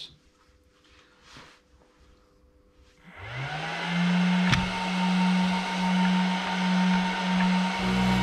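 Cooling fan of an ISDT FD-200 LiPo discharger spinning up about three seconds in, its whine rising in pitch, then running loud and steady with a slightly pulsing whir as the discharger starts pulling a 4S pack down at 25 amps. There is a single click about a second after the fan starts.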